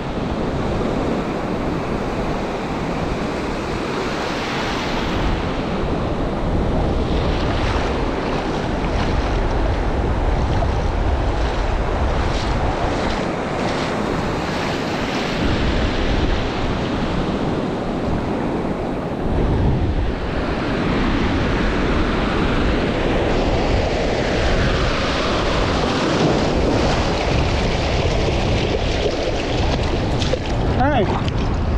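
Ocean surf breaking and washing around the shins in shallow water, swelling and easing every few seconds, with wind buffeting the microphone.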